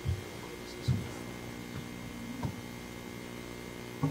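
Steady electrical mains hum on a sound system, with a few brief low thumps.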